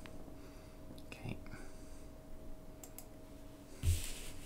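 Quiet desk-handling sounds: a few faint clicks, then a soft thump near the end as a hand settles on a stack of paper sheets on a wooden desk.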